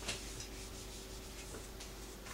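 Felt whiteboard eraser rubbing across a whiteboard, wiping off a marker drawing: one brisk, louder stroke at the start, then a few fainter short strokes.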